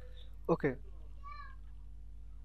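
A man says "okay" once over a steady low electrical hum. About a second in, a faint, short, higher-pitched call rises and falls.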